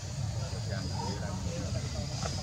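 Indistinct background voices over a steady low rumble, with no clear words.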